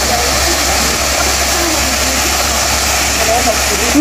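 Steady rush of a small waterfall pouring into a pool, with faint distant voices of bathers.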